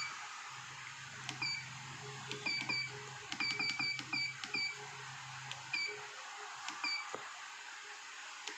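Essae SI-810PR receipt-printing scale's keypad beeping as its keys are pressed: about a dozen short, high beeps, some in quick runs of two or three.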